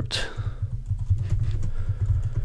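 Typing on a computer keyboard: a quick, uneven run of key clicks as a phrase is typed, over a steady low hum.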